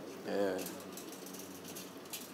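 A short hum-like voiced sound from a person about half a second in, then faint outdoor background with a few light clicks.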